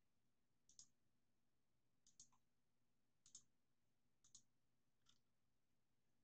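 Near silence broken by faint double clicks, five in all, about one a second, from someone working a computer at the desk.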